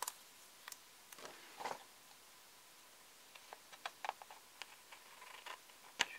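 Faint handling of paper and washi tape on a planner page: light rustles and scattered small clicks, with a quicker run of light ticks and snips in the second half as small scissors start trimming the page edge.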